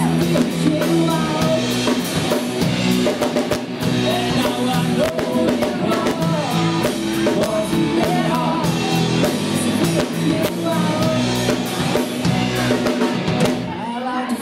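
Live rock band playing: electric guitars and bass over a drum kit with cymbals, with a woman singing into a microphone.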